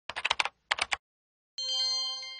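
Computer keyboard typing in two quick runs of clicks, then a bright chime near the end that rings on and fades.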